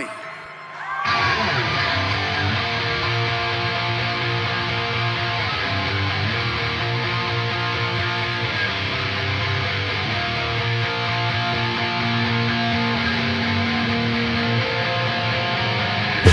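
Live rock band opening a song with electric guitar chords left to ring out, held and changing every few seconds, with no drums yet. It starts about a second in, after a short pause.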